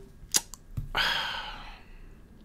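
A sharp click, then a man's long sigh, a breath out that fades away.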